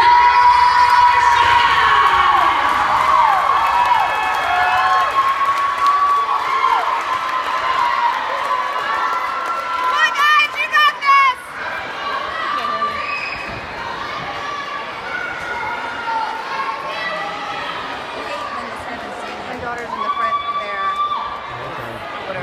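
Large crowd of spectators cheering and screaming, with many long high-pitched shrieks and shouts overlapping. There is a burst of rapid yelps about ten seconds in and one long shrill scream near the end.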